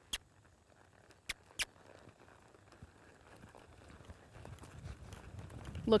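Horse's hoofbeats on sand arena footing: dull low thuds that grow louder through the second half as the horse picks up a lope. Three sharp clicks in the first two seconds.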